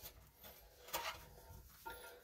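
A few faint, short taps and knocks from hands handling the plastic parts of a toilet tank, the clearest about a second in.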